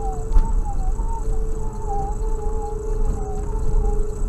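Car cabin rumble while driving slowly on a rough gravel track. Over the rumble sit a steady hum and a thin whine that wavers up and down in pitch.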